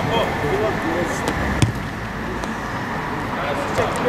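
Open-air pitch ambience of players calling out during a football match, with one sharp thud of a ball being kicked about a second and a half in.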